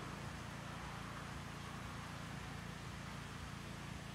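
Steady outdoor background noise: a low rumble under an even hiss, with no distinct sound standing out.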